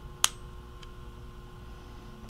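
Pressure-activated single-use safety lancet firing against a fingertip: one sharp click about a quarter second in as the spring-loaded needle pricks the skin and retracts, followed by a faint tick.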